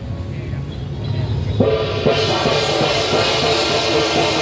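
Traditional Taiwanese temple-procession music with struck gongs, cymbals and drums starts suddenly about one and a half seconds in and runs on with ringing metal and a steady beat. A low rumble fills the first part.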